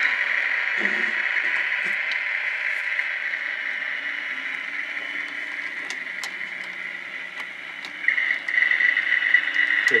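HO scale model diesel locomotives running slowly along the track: a steady high-pitched whir with faint clicks. It fades gradually and picks up again, pulsing, about eight seconds in.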